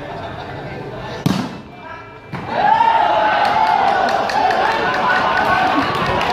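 A single sharp smack of a hand striking a volleyball about a second in, then from about two and a half seconds a loud, drawn-out shouting voice that carries on to the end, over a murmuring crowd.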